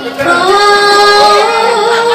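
Female voice singing one long, wavering note that starts just after a brief lull and steps up in pitch about halfway through.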